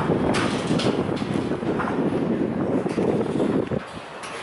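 Wind buffeting the camera's microphone: a steady, dense rumble that cuts off suddenly just before the end.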